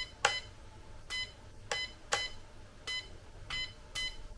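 Short electronic beeps from an RC transmitter as its buttons are pressed, about six or seven single high beeps at uneven intervals.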